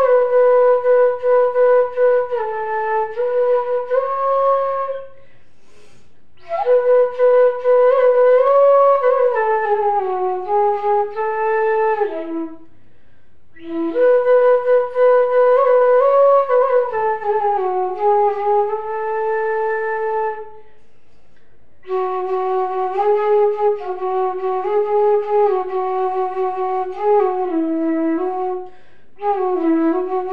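Solo bamboo bansuri flute from Radhika Flutes playing a slow melody with slides between notes. The phrases break for short breath pauses about every seven to eight seconds.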